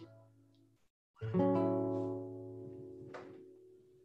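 Acoustic guitar: after a short moment of silence, a chord is struck about a second in and left to ring, slowly fading.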